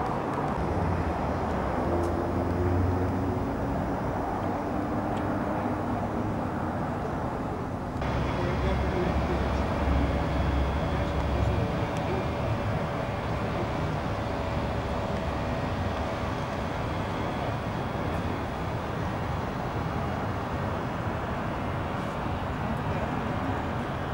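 Outdoor car-gathering ambience: indistinct voices in the background over a steady low rumble of vehicles. The sound changes abruptly about eight seconds in.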